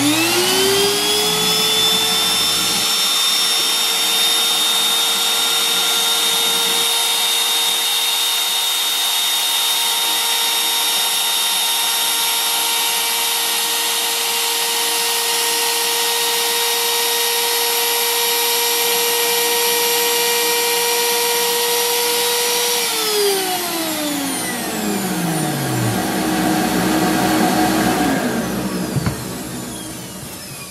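Bosch PMR 500 trim router switched on and spinning up to a steady high whine within a second, running as it routes the saddle slot in a guitar bridge. About three quarters of the way through it is switched off and winds down, its pitch falling away over a few seconds.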